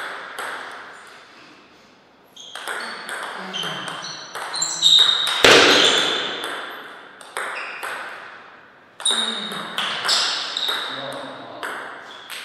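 Table tennis rally: the ball clicking sharply off bats and table again and again, each hit ringing briefly and echoing in a large hall, with the loudest hits about five seconds in and another loud group about nine seconds in.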